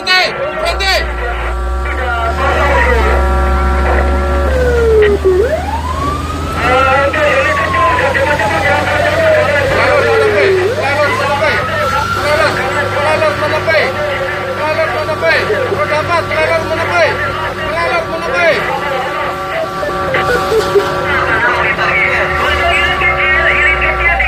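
Emergency-vehicle siren, heard from inside the cab of a fire-response vehicle. A long steady horn-like tone at the start gives way around 5 s to two slow wails that rise and fall, and then the steady tone returns. A low engine rumble runs underneath.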